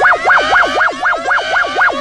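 New Zealand Civil Defence emergency alert tone: a loud siren-like tone warbling quickly up and down, about six times a second, with a second fainter tone repeatedly gliding upward behind it.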